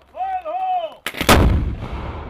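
A long, drawn-out shouted call, then about a second in a demolition charge goes off against a cinder-block wall: a sudden, loud blast whose low rumble dies away slowly.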